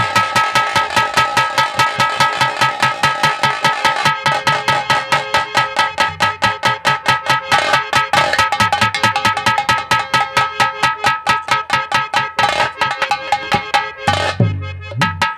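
Fast, even nautanki drumming on a nagara, about five strokes a second, over a steady held tone.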